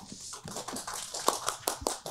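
Sheets of paper rustling and being handled close to a microphone: a quick run of crinkles and small taps.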